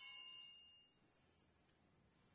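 Altar bells ringing at the elevation of the host after the consecration, the last strike's ring dying away within about the first second, then near silence.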